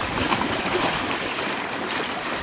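Shallow lake water sloshing and splashing around the legs of divers in drysuits as they wade out to the shore, a steady rushing noise.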